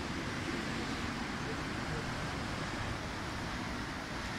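Wind buffeting the microphone: a steady rushing noise with an uneven low rumble.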